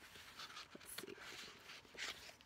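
Faint paper rustles of a book's pages being flipped through by hand, a few short riffles.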